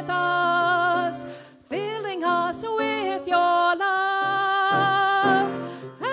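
A woman singing a solo into a microphone over instrumental accompaniment, holding long notes with a brief break between phrases about a second and a half in.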